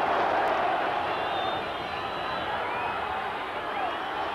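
Large football stadium crowd cheering a home goal, a dense wash of massed voices that eases a little about a second and a half in.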